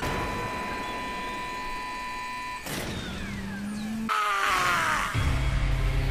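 Anime soundtrack playing: music and effects, a steady high tone for the first two and a half seconds, then falling sweeps, and a low steady drone from about five seconds in.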